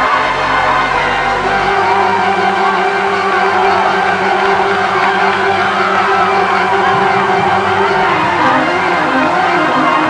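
Church organ holding long sustained chords while a congregation shouts, whoops and cheers in a large sanctuary.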